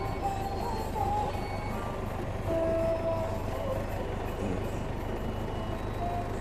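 Old forklift's engine running steadily as the forklift is driven along, a constant low rumble.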